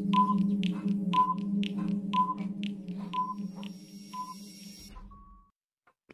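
Stopwatch countdown sound effect: a clock ticking about twice a second with a short high beep each second, five beeps, over a steady low hum. It ends with a slightly longer beep about five seconds in.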